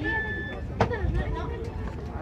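People's voices and a laugh over a steady low rumble of outdoor street bustle, with a brief clear high tone near the start and a sharp click a little under a second in.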